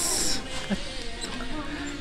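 A brief high scraping squeak right at the start as the carved stopper of a leather-wrapped glass bottle is twisted against its neck, then the low chatter of a busy, noisy store.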